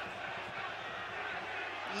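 Steady murmur of a stadium crowd in a football broadcast's ambient sound.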